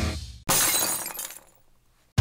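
Intro music fades out, then about half a second in a sudden glass-shattering sound effect that dies away over about a second, leaving near silence.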